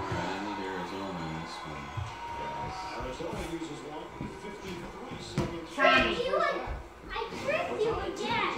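Voices: young children's chatter and calls, with an adult's voice early on, and a few short knocks.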